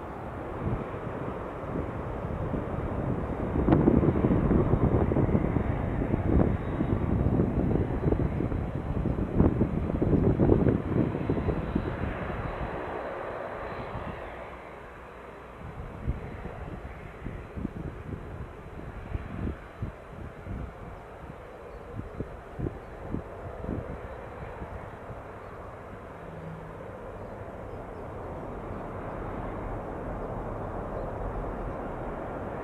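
Jet airliner's engines passing close by: a rough, rumbling roar that builds over the first few seconds, stays loud for several seconds, then fades away over the second half.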